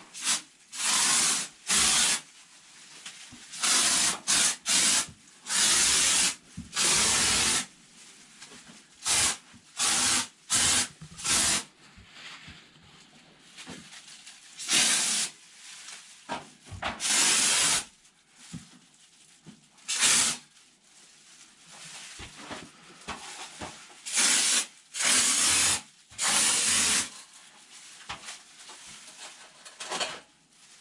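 Hand-held foam gun on a can of Kraken spray foam insulation, squirted in many short hissing bursts, most under a second, in clusters with pauses between.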